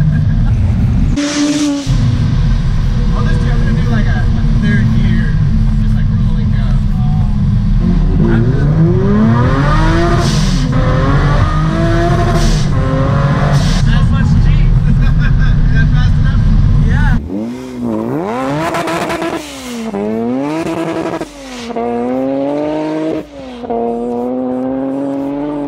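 Honda VTEC engine of a Rotrex-supercharged Mini Cooper accelerating hard, loud inside the cabin, with heavy drivetrain and road noise. In the last several seconds the sound changes: the engine note climbs and drops sharply at each gear change, about three times in a row.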